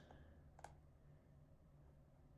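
Near silence: quiet room tone, with one faint click a little over half a second in.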